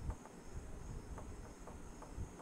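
Faint room tone: a steady high-pitched whine with a low rumble underneath and a few soft taps.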